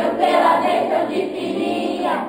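A group of children singing together in Portuguese, a religious Mother's Day song sung as a choir.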